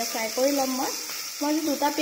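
Sliced onions frying in oil in an aluminium pressure cooker, a steady sizzle, as they are stirred with a spatula toward golden brown. A pitched voice sounds over the sizzle.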